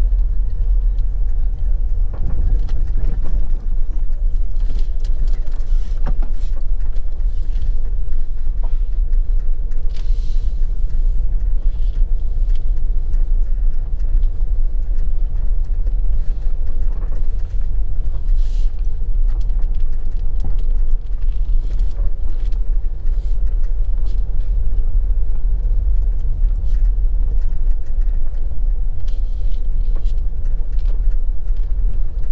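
Car driving along, a steady low rumble of engine and tyres with a few brief clatters.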